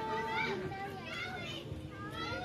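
Children's high-pitched voices, talking and calling out as they play.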